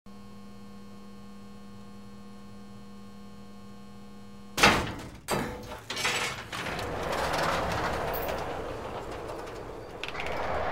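A steady electrical hum with a few fixed tones, then about halfway a loud metallic bang followed by more knocks and a sustained rattling and scraping as a crowbar forces a door with a metal mesh security grille.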